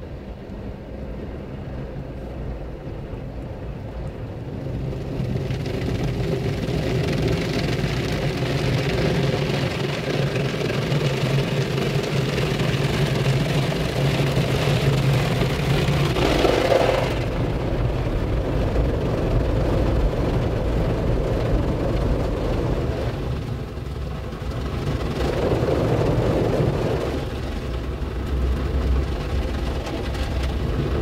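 PDQ Tandem SurfLine automatic car wash spraying water and foam onto the car, heard from inside the cabin as a rushing drumming on the glass and body over a steady low hum. The spray builds about five seconds in, is loudest about halfway through, and swells again near the end as the wash passes over.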